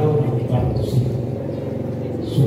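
A man speaking into a microphone, his voice amplified through loudspeakers.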